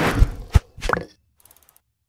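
Animated-logo sound effects: a deep thud, a sharp pop about half a second in, a third hit near one second, then a few faint ticks.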